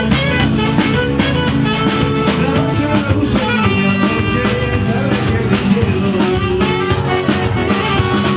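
Live band playing upbeat music: acoustic guitars strummed over a drum kit, with a saxophone playing held notes.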